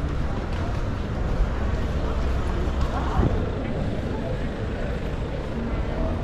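Car engines running as cars crawl slowly along a narrow street, a steady deep rumble with one short rising engine note about three seconds in, over the chatter of passers-by.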